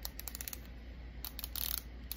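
Toujeo insulin pen's dose selector being dialed up to 40 units: a quick run of small, light plastic clicks, one per unit.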